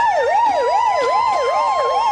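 Emergency-vehicle siren wailing fast, its pitch sweeping up and down about two and a half times a second over a steady high tone.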